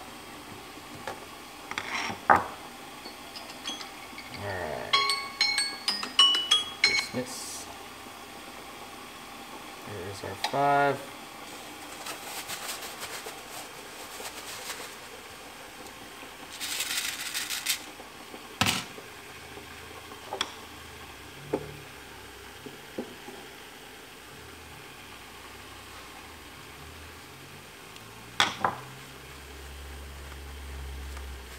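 Water at a rolling boil in a pot, with a stainless-steel mesh strainer clinking and ringing against the pot in a run of light metallic strikes over the first several seconds, then a few sharper knocks later on.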